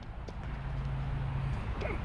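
Outdoor background noise with a steady low hum for about a second in the middle, and a few faint footsteps on concrete.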